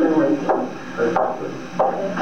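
Indistinct voices talking, with several abrupt starts.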